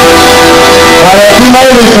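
Live chamamé band playing: accordions holding chords over guitar, and a man's voice comes in singing about a second in.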